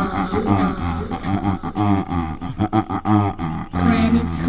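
Unaccompanied vocals with no instruments: wordless voices making beatbox-style mouth percussion, sharp clicks among pitched vocal sounds.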